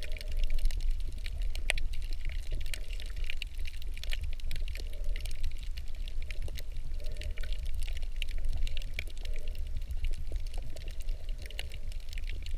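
Underwater sound picked up by a GoPro in its housing while submerged: a steady low rumble with a dense, irregular crackle of sharp little clicks, the kind of crackle heard on a coral reef.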